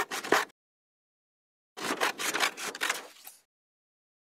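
Sound effect of scissors snipping: a quick run of cuts ending about half a second in, then a second, longer run of rapid snips from about two seconds in, with dead silence between.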